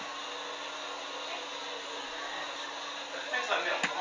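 Steady whooshing background noise with a faint hum. Muffled voices come in near the end with a single click.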